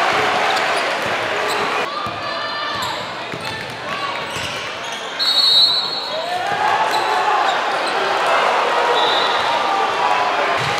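Crowd voices and shouting in a basketball gym, with a basketball bouncing on the hardwood court. A brief shrill tone sounds about five seconds in, with a fainter one near the end.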